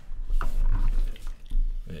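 Microphone handling noise as a podcast microphone on a desk stand is moved closer: a loud low rumble with a few knocks, strongest in the first half and again just before the end.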